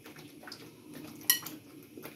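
Kitchen utensil handling raw chicken pieces from a glass bowl into a pan of masala: faint scattered clicks and one short, bright, ringing clink just over a second in.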